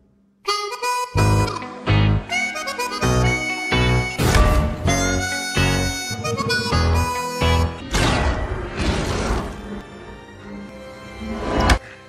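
Background music: a held lead melody over heavy, regular bass beats. It starts about half a second in, builds near the end and stops suddenly.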